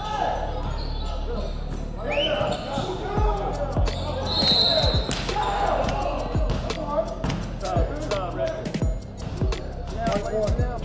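A basketball bouncing on a hardwood gym floor, with a thud every half second to second and a half through the second half, and a few short high squeaks from sneakers on the boards.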